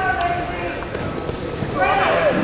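Raised voices shouting in a large gym, near the start and again near the end, over quick scuffs and knocks of wrestlers' feet on the mat.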